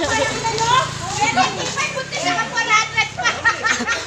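Excited crowd of adults and children shouting and chattering over one another, with a low steady hum underneath that stops shortly before the end.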